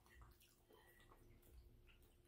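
Near silence, with a few faint soft clicks from mouths chewing moist cake.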